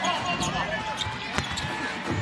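Basketball dribbled on a hardwood arena court, with a sharp knock about one and a half seconds in, over arena background noise and faint voices.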